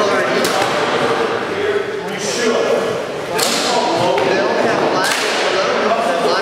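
Rattan swords striking shield and armour in SCA heavy-combat sparring: about four sharp cracks a second or so apart, each echoing off the hard walls of the court.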